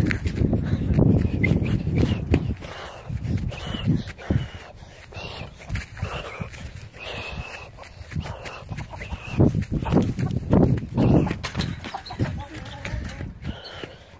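Someone running hard across a grass yard while holding a phone: thudding footfalls, rumbling handling and wind noise on the microphone, and the runner's breath and short vocal sounds.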